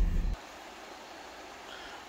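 Low road rumble inside a moving car cuts off abruptly about a third of a second in, giving way to a faint, steady rushing of the river flowing over rocks below the bridge.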